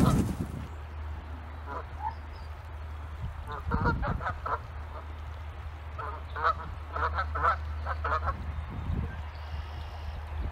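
Canada geese honking in short runs of calls: a couple at first, a quick cluster about four seconds in, and a longer run in the second half, over a low steady rumble.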